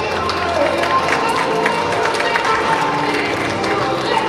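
Audience clapping in a hall: dense, irregular claps with crowd voices mixed in.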